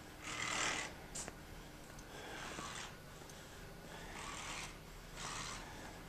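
A person's breathing close to the microphone while walking: four short rushes of breath, one every second or two.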